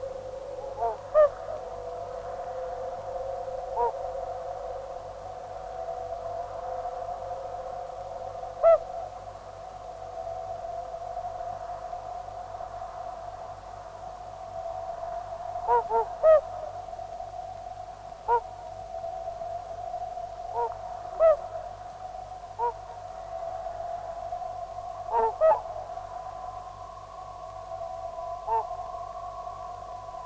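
Abstract early-1970s electronic music: a held drone of steady tones, with about a dozen short pitched blips sounding at irregular moments over it. A higher held tone joins near the end.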